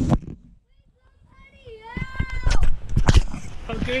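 A young child's short high-pitched squeal, rising in pitch, about halfway through, followed by two sharp knocks as the camera is handled.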